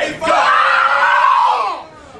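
A person's long, loud yell of effort or encouragement during an arm-wrestling bout, held about a second and a half and falling slightly in pitch as it ends.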